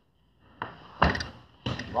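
Open-hand and elbow strikes landing on a freestanding rubber body-opponent training dummy: two dull thuds, the first about a second in and the second about half a second later.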